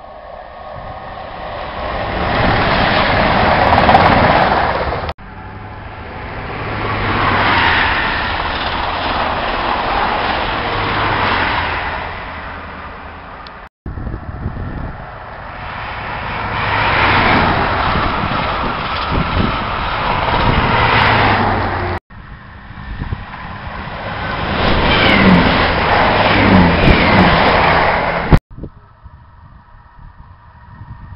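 High-speed trains passing through at speed in several short joined clips: loud rushing wheel-and-rail noise that swells as each train nears and cuts off abruptly at each edit, with a few short bending tones near the end. One of the passing trains is a First Great Western HST with Class 43 power cars.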